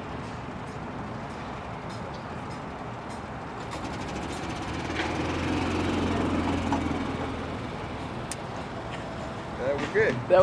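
Outdoor ambience with faint background voices; a low hum swells and fades between about four and eight seconds in.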